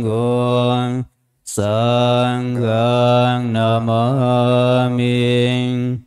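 Buddhist monks chanting Pali verses on a low, nearly level pitch, with a short pause for breath about a second in. The chant stops near the end.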